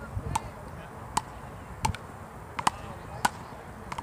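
Frescobol paddles hitting a ball back and forth in a rally: six sharp knocks, about one and a half a second.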